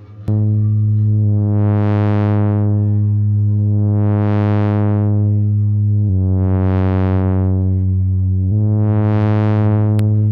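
Expert Sleepers Disting mk4 Eurorack module running as a wavetable oscillator: a low synth tone that enters just after the start and steps between a few pitches. Its tone brightens and dulls again about four times, every couple of seconds.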